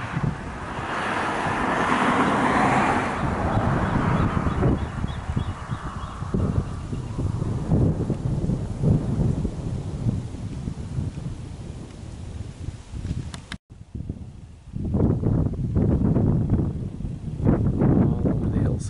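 Wind gusting on the microphone, with a passing vehicle swelling and fading over the first few seconds.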